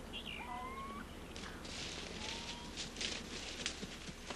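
Woodland birds chirping with a few short rising whistles, then from about a second and a half in a dense run of high rustling crackles, over a steady low hum.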